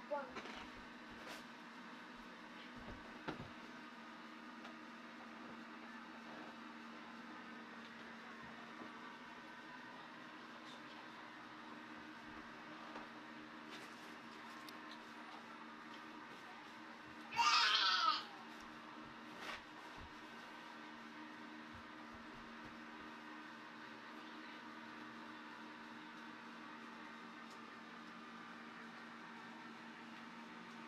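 Small electric blower fan inside an airblown inflatable, running with a steady low hum that keeps the figure inflated. About seventeen seconds in, a child gives one brief high-pitched squeal.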